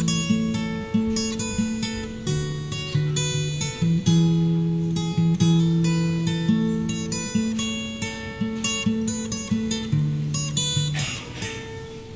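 Solo steel-string acoustic guitar with a capo, played fingerstyle and without singing: a melody of quick plucked notes over ringing bass notes. The playing eases off shortly before the end.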